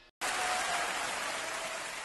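An even, rain-like hiss that starts suddenly just after the start and slowly fades, with a faint thin tone in it.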